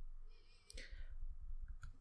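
Faint breath intake with a slight nasal whistle, then small mouth clicks as a speaker's lips part before talking, over a low hum.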